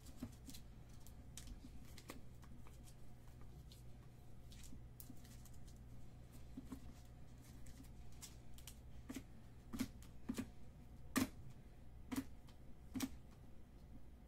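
Trading cards being handled and set down on a table: light, scattered clicks and taps, coming more often and louder in the second half, over a steady low hum.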